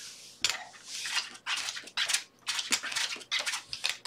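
Casino chips clicking and clinking in quick irregular taps as bets are set, with playing cards being dealt onto the felt.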